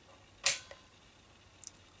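Rotary selector switch of a TekPower TP4000ZC multimeter clicking into its next detent: one sharp click about half a second in, followed by a fainter tick and a couple of faint ticks near the end.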